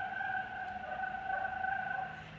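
A voice holding one long, steady high note at an even pitch, like a drawn-out call.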